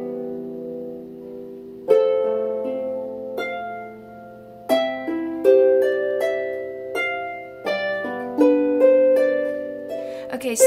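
Harpsicle lever harp being played: plucked chords and single notes that ring on and slowly fade, a few in the first half and then a new chord about every second from about halfway in. The strings are squeezed rather than plucked sharply, giving the small harp a full, deep tone.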